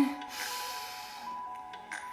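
A slow, audible breath in, heard as a soft rush of air that fades after about a second, over quiet background music with a held tone.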